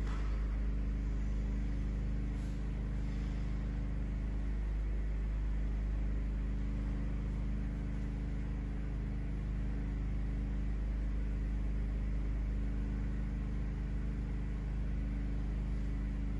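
Steady low background hum with a few constant low tones, unchanging throughout.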